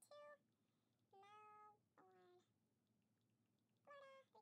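Three faint, short, pitched vocal sounds: one brief near the start, one longer just over a second in, and one around two seconds in, with quiet between them.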